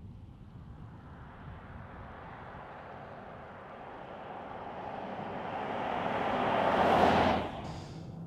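A car driving past, its tyre and road noise building slowly over several seconds to a peak, then cutting off abruptly near the end.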